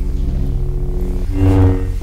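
Lightsaber sound effect: a steady low electric hum that swells briefly about one and a half seconds in.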